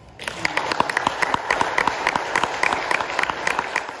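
Audience applauding after a song ends, the clapping starting about a quarter second in and cut off suddenly near the end.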